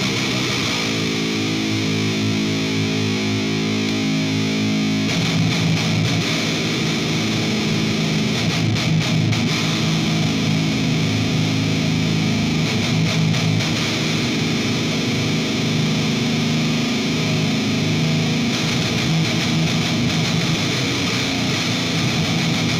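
Electric guitar played through the This Heavy Earth Bad Trip, a RAT-style distortion pedal: a chord held for about four seconds, then distorted riffing from about five seconds in.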